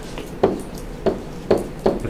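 A stylus tapping down on a writing surface four times, about every half second, during handwriting.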